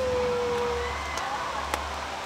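A person's voice holding one long call that falls slightly in pitch and fades about a second in, over a steady low rumble, with a few faint clicks afterwards.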